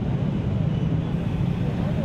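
Steady hum of motorcycle traffic on a busy street, with people's voices mixed in.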